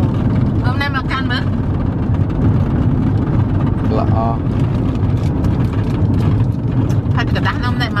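Steady low rumble of a car heard from inside its cabin, with short bursts of voices over it.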